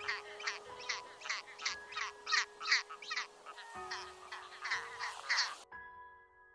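Skua calling: a rapid run of harsh, sharp notes, about three a second, that stops near the end.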